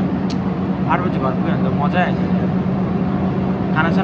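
Steady low hum of a city bus in motion, heard from inside the passenger cabin, with a few brief snatches of voice over it.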